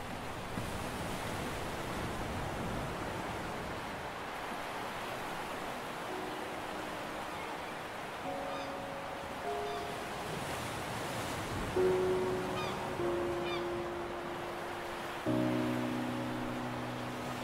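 Steady wash of surf and sea wind from a sea-cliff atmosphere recording. About six seconds in, soft held music notes enter over it, a few at a time, and a fuller, louder chord comes in near the end.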